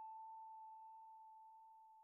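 A single held note of background music dying away: one clear steady tone, very faint, fading slowly.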